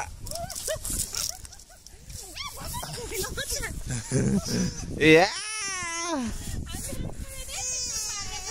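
A toddler's high-pitched wordless vocalizing: short rising and falling calls, then one long drawn-out cry about five seconds in that slides down in pitch.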